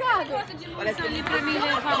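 Background chatter: several people talking at once at a gathering, with no single clear voice.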